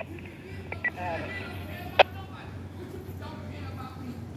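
Faint voices in the background over a steady low hum, with a few short tones under a second in and one sharp click about halfway through.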